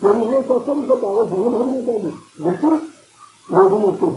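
A man speaking Urdu in phrases, with two short pauses before the last phrase.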